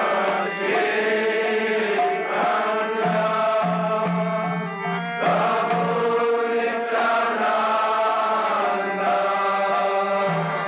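Devotional mantra chanting with musical accompaniment: voices singing in long held notes over a steady low sustained tone.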